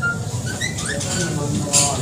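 A bird chirping: several short, high chirps that rise in pitch, over the low murmur of a room full of people.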